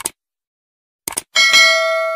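Subscribe-button animation sound effect: a mouse click at the start, a quick double click just after a second in, then a bright notification-bell ding that rings on for about a second.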